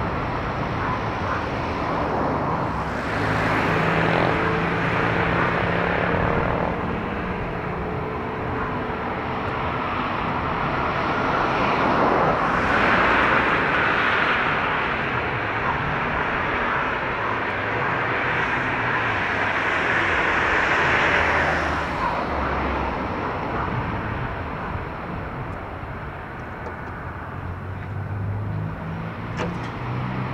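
The twin Rolls-Royce BR710 turbofans of a Gulfstream G550 at taxi power: a continuous jet rush with a faint whine, swelling and easing several times as the aircraft taxis, quieter near the end.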